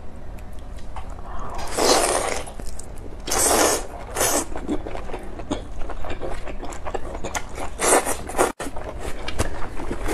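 Close-miked eating of spicy squid tentacles: wet chewing and mouth clicks throughout, with a few longer noisy slurps of broth about two, three and a half and eight seconds in.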